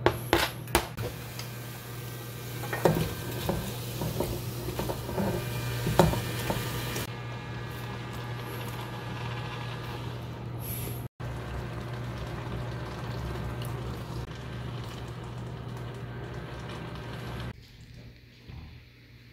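Stir-frying in a stainless-steel pot: crumbled tofu and vegetables sizzling as a spatula knocks and scrapes against the pot, with several sharp knocks in the first six seconds, over a steady low hum.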